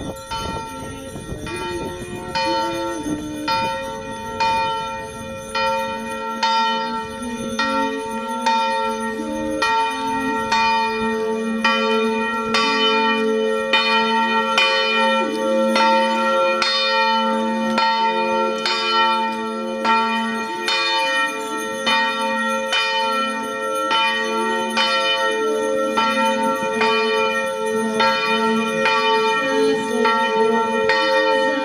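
Church bells ringing in a steady, even rhythm, a stroke about every three-quarters of a second, with the bell tones sounding on between strokes.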